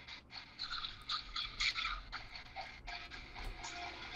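Electric guitar being played, heard faintly over a video-chat connection.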